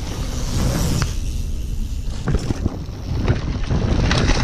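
Wind buffeting a bike-mounted action camera's microphone while a mountain bike rolls fast over a dirt trail, a steady rumble with scattered clicks and rattles from the bike. It grows louder near the end.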